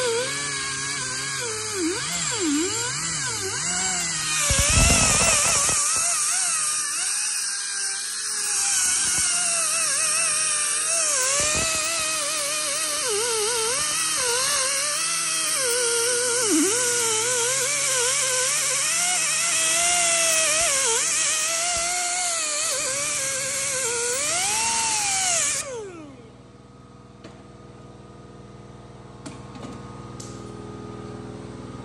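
Power tool spinning a wire brush against the rusty front wheel hub face of a BMW F30, its motor whine rising and falling in pitch as the brush is pressed on and eased off. The hub is being cleaned of rust so the new brake disc sits flat and does not shake later. Near the end the tool stops, leaving a faint steady hum.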